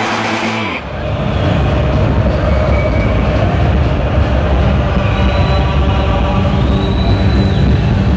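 The tail of a rock-style intro jingle cuts off about a second in. It gives way to loud, steady crowd noise with a heavy low rumble in a large indoor sports hall.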